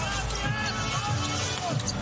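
Basketball being dribbled on a hardwood court, a steady run of bounces about four a second, over arena crowd noise.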